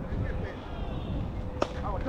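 Low, gusty rumble of wind on an outdoor camera microphone, with faint distant voices and a single sharp knock about one and a half seconds in.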